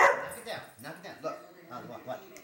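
Labrador dog barking at a can of compressed air it is wary of: one loud bark right at the start, then fainter, shorter sounds.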